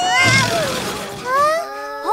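Cartoon crash sound effect: a noisy clattering burst at the start as the stacked cartoon cars topple over. Animated characters cry out over it, with a rising cry near the end.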